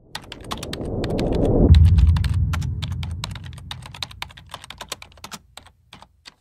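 Text-animation sound effects: rapid keyboard-typing clicks over a swell that builds to a deep boom nearly two seconds in, then fades away.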